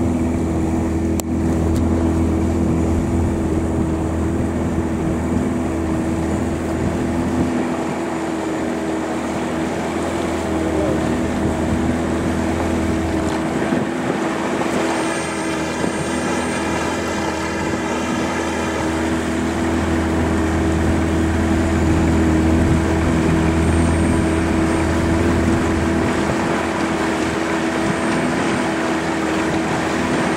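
Small fishing boat's outboard motor running steadily at cruising speed: a constant engine drone with wind and rushing water mixed in.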